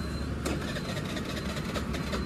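Suzuki Access 125 scooter's electric starter cranking the single-cylinder engine, which does not catch because the fuel tank has run dry. A steady low rumble with a few clicks.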